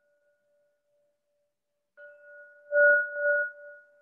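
A meditation singing bowl is struck, signalling the end of a guided meditation. It rings with two steady tones: the fading tail of an earlier stroke, then a new stroke about halfway through that swells louder a moment later and slowly dies away.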